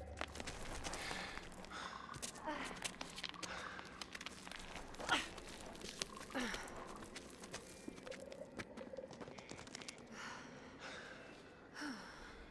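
Two people scrambling over rocks and undergrowth: scuffing footsteps, rustling leaves and small knocks of stone, with a few short gasps and heavy breaths.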